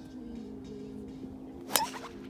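A golf driver striking a teed ball: one sharp crack about three-quarters of the way in, over steady background music.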